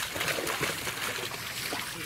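A dog wading and splashing through shallow water, with many small irregular splashes in quick succession as its legs churn the water.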